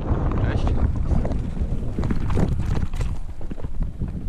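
Mountain bike descending a rough dirt singletrack at speed: wind buffeting the action-camera microphone over a low rumble from the tyres and frame, with scattered clicks and rattles from the bike.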